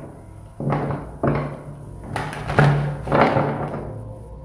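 A deck of tarot cards being handled and knocked against a table, with about five dull thumps, over soft background music.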